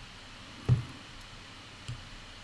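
Two soft knocks over quiet room tone: a sharper one about a third of the way in and a fainter one near the end.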